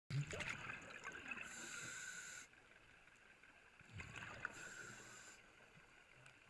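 A scuba diver breathing through a regulator underwater, two breaths: each a burst of bubbling followed by about a second of steady hiss. The second breath starts about four seconds in.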